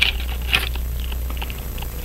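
Small metal tool clicking lightly against a pocket watch as a hand puller is set over its hands: two sharp clicks about half a second apart, then a few faint ticks. A steady low hum runs underneath.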